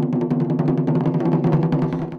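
Two nagado-daiko taiko drums struck fast and continuously with wooden bachi: a dense roll of a dozen or more hits a second over the drums' low ringing.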